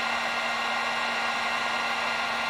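Heat gun running steadily: an even rush of air with a steady low hum under it, blowing onto a motorcycle radiator fan thermostatic switch to heat it.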